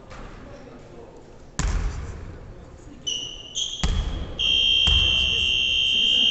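A basketball bouncing on a wooden gym floor, three heavy thuds that echo in the hall. In the second half come short high chirps and then a steady high whistle held for about two seconds, like a referee's whistle.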